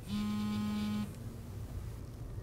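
A mobile phone buzzing once, a steady low buzz lasting about a second.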